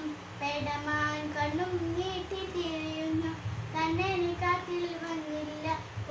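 A young girl singing solo, holding long notes that waver slightly in pitch, with brief breaths between phrases.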